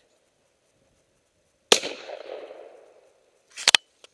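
A single shotgun blast about a second and a half in, echoing for over a second as it dies away. Near the end, a quick run of sharp mechanical clacks follows.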